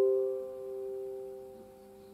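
Final chord of a Fender Montecito tenor ukulele in low-G tuning ringing out and fading away.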